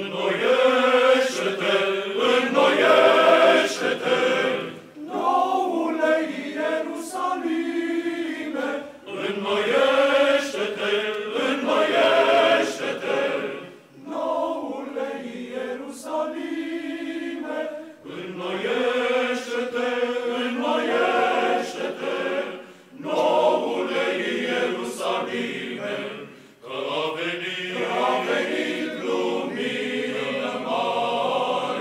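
Male choir of Orthodox priests singing a cappella, entering together out of silence and moving in phrases of a few seconds each, with brief breaks between them.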